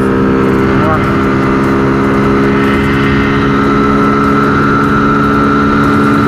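Honda CG 125 Fan's single-cylinder four-stroke engine held at high revs in a flat-out top-speed run, a steady drone as the bike passes 100 km/h, with wind rushing over the microphone. The engine is running on a freshly readjusted carburettor air-fuel mixture, set to cure a lack of power.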